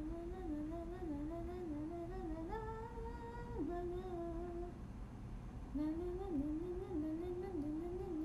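A young woman humming a wavering tune. She pauses for about a second just past the middle, then carries on.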